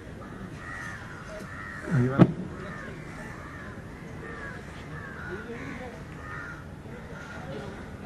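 Crows cawing over and over, short arched calls every half second or so. About two seconds in comes a brief loud burst that ends in a sharp crack.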